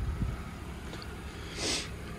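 Low, quiet hum of a 2020 Nissan Sentra's 2.0-litre four-cylinder engine idling, with the fading rumble of a car door just shut at the start. A short breath close to the microphone comes near the end.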